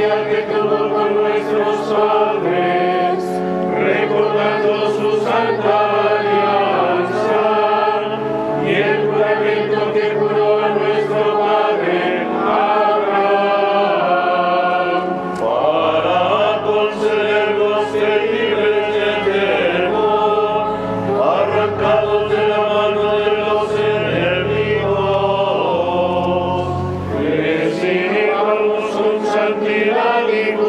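A choir singing a sacred chant during Mass, with long held low notes sounding beneath the voices and no break in the singing.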